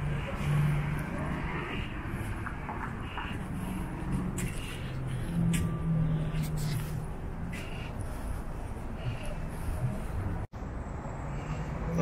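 Street traffic: car engines running and passing, with a steady low engine hum. The sound drops out for an instant near the end.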